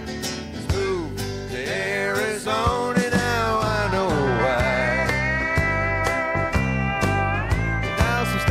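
Live country band playing an instrumental passage: a lead guitar with bending, sliding notes, settling into long held notes in the second half, over rhythm guitar and a steady drum beat.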